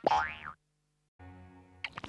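Electronically altered cartoon sound effects: a loud boing whose pitch rises, stopping abruptly about half a second in. After a short silence comes a faint steady tone.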